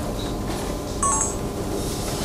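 A brief electronic beep of two falling notes about a second in, over the noise of a room.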